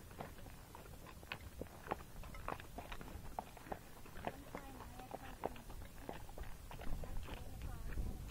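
Hooves of a Tennessee Walking Horse on a dirt trail: an irregular run of soft thuds and clicks as the horse moves along under the rider. A faint voice comes in around the middle.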